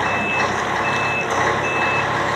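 Truck reversing alarm beeping while a loaded semi-trailer truck manoeuvres in reverse, with its diesel engine running underneath. Three short high beeps, a little under a second apart.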